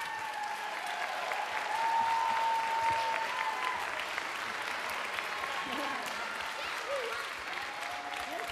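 Audience applauding steadily, with voices calling out over the clapping.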